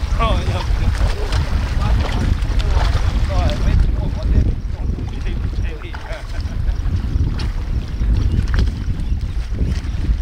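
Strong wind buffeting the microphone, a steady low rumble, with brief faint voices near the start and again about three seconds in.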